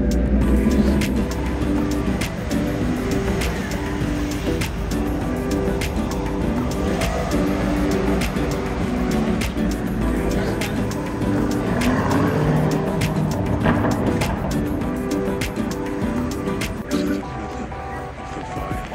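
Background music with steady held notes over city street noise, with car traffic passing.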